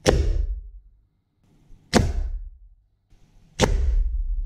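Three air rifle shots fired into a block of ballistic gel. Each is a sharp report followed by a brief low rumble. The first comes as the sound opens, the next about two seconds later, and the last about a second and a half after that.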